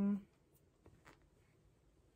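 Faint, brief rustles and light clicks of clothing being handled, a few soft touches about half a second to a second in, after a single spoken word at the start.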